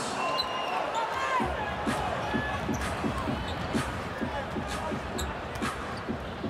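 Basketballs bouncing on a hardwood court in a large arena: a steady run of dribble thuds, about three a second, beginning about a second and a half in.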